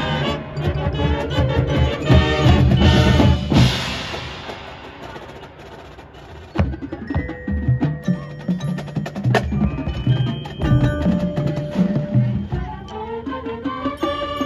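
High school marching band playing its field show: the full band is loud for the first few seconds, then dies away. About six and a half seconds in, a sharp hit starts a quieter passage of struck percussion and ringing mallet-percussion notes from the front ensemble, with lower held notes underneath.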